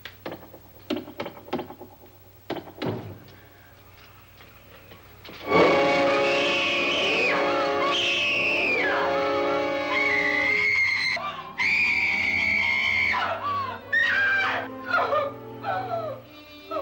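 A few knocks on a wall in the first three seconds, then a sudden loud orchestral horror stinger with a woman screaming over it in long cries, breaking into shorter gasping cries near the end.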